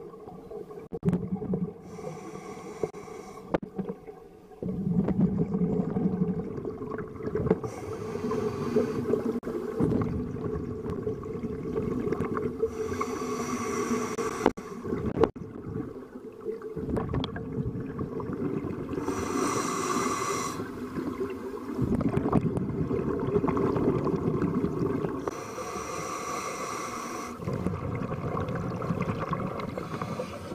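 Scuba breathing heard underwater: a hissing breath through the regulator about every six seconds, with the rumble and gurgle of exhaled bubbles in between.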